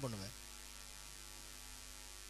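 A man's spoken word trails off in the first moment, then a steady low electrical mains hum carries on alone.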